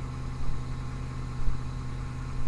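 Steady low electrical hum and background hiss of an old recording, with a soft low thump about once a second.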